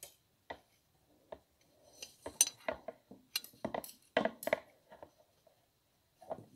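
Small irregular clicks and clinks of a crochet hook and a hairpin lace loom's metal prongs being handled while crocheting, a few scattered taps at first, then a quicker run from about two seconds in.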